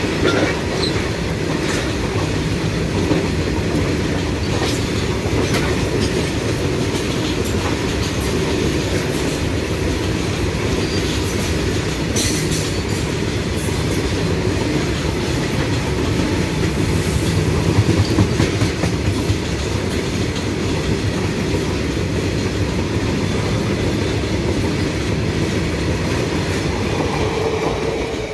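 Open-top steel freight wagons running past close by at speed: a loud, steady rumble of steel wheels on rail, with a clickety-clack of wheelsets over the rail joints and scattered sharp clanks, loudest a little past halfway through. The train's tail clears the track near the end.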